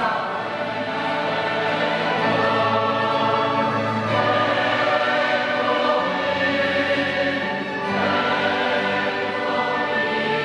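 Choir singing in long held chords, moving to a new phrase about every four seconds.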